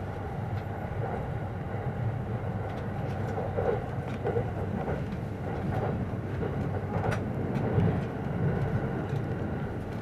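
Steady running rumble of a train heard from inside the passenger car, with a few short clicks and knocks scattered through it.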